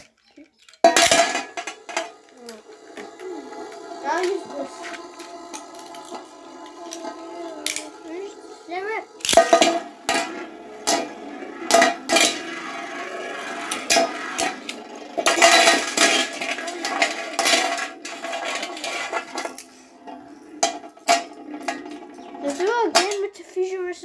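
Three Beyblade spinning tops launched into a metal tray, whirring and grinding on the metal, with many sharp clinks as they knock into each other and the rim. The spinning sound starts suddenly about a second in and dies away around twenty seconds in, as the tops slow down.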